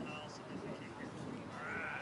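Faint background voices of people talking in the street, with a brief high-pitched call that rises and falls near the end.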